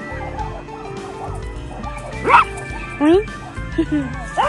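Small white dogs playing, with one giving three sharp, high barks in the second half, the first the loudest, over steady background music.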